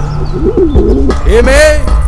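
A person's loud, sarcastic laugh: a few quick peals rising and falling in pitch, then a longer drawn-out one.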